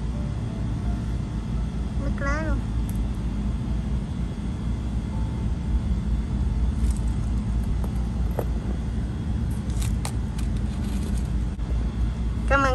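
Steady low rumble, with a brief voice sound about two seconds in and a few faint clicks near the end.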